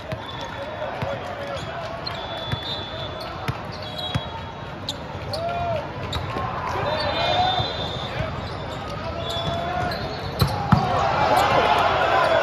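Indoor volleyball match: a volleyball bounced on the hard court before a serve, then served and struck during a rally, with sharp ball hits, shoe squeaks and background voices. Two loud hits come near the end, followed by several raised voices shouting at once.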